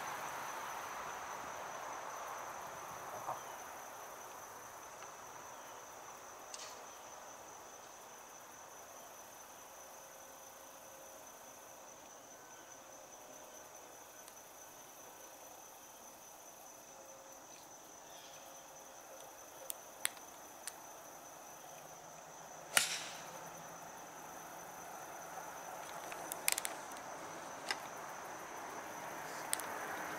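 Insects buzzing at one steady high pitch. About two-thirds of the way through comes a single sharp click, the iron striking the golf ball on a tee shot, with a few fainter ticks around it. A broad rushing noise fades away over the first few seconds.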